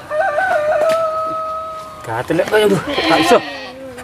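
Goats bleating. One long bleat wavers and then holds steady for nearly two seconds, followed by a cluster of shorter, overlapping bleats.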